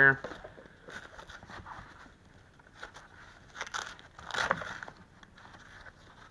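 A padded fabric battery pouch being handled: soft rustling and scuffing of cloth, with two louder scratchy rasps about three and a half and four and a half seconds in.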